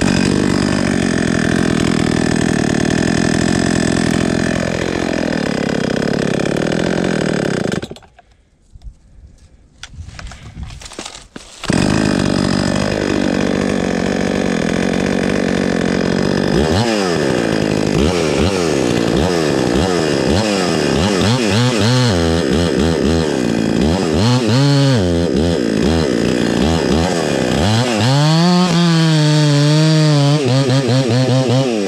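Husqvarna 266XP two-stroke chainsaw running at high revs and dropping back. It dies about eight seconds in and starts again about four seconds later. It is then revved up and let down again and again, and near the end it is cutting into the log. The saw will not hold a steady idle: the owner says it needs more idle.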